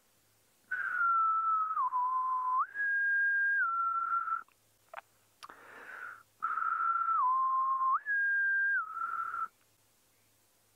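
A man whistling the same short tune twice, with a pause of about two seconds between. Each time he holds a middle note, steps down, jumps up to a higher note, then comes back to the middle. It is a call to coax hyena cubs out of their den.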